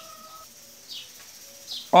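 Faint bird chirps in the background: two short high calls, about a second in and again near the end.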